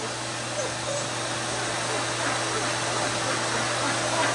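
Hose-fed pet grooming dryer blowing air with a steady motor hum, growing slightly louder.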